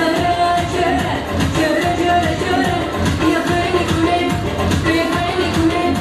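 A woman singing a pop song into a microphone over loud amplified backing music with a steady beat, her voice holding long, wavering notes.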